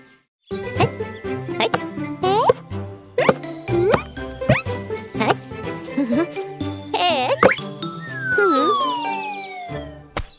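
Upbeat children's cartoon music with a bouncy beat and several short upward swooping sound effects. Near the end a long falling glide in pitch sweeps down over about two seconds.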